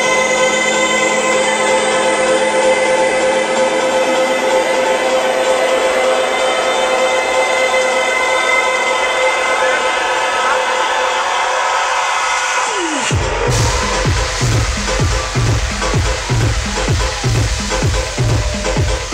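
Electronic house music over a club sound system: a breakdown of held synth chords under a rising noise sweep, then about thirteen seconds in a falling sweep drops into a steady four-on-the-floor kick drum at about two beats a second.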